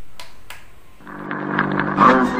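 Portable transistor radio being tuned: a hiss with two sharp clicks, then a steady hum with a muffled, narrow-band broadcast signal fading in during the second half.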